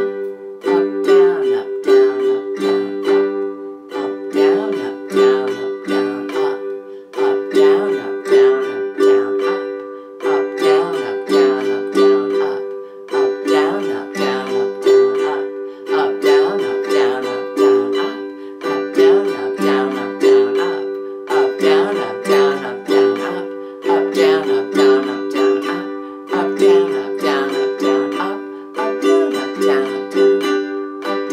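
Ukulele strumming a held G chord over and over in a slow practice tempo, using the 'super active island strum': down-up, down-up, a skipped third beat, then up, down-up.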